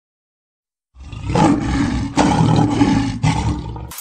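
A lion roaring, starting about a second in, in three long swells before it cuts off near the end.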